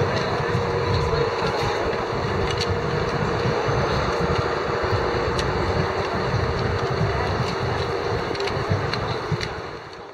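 Busy street ambience from within a walking crowd: people's voices blending into a murmur, traffic noise and wind rumbling on the microphone, with a steady hum under it. It all fades out near the end.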